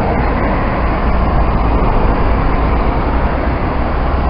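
Loud, steady roar of road traffic passing close by, heavy in low rumble.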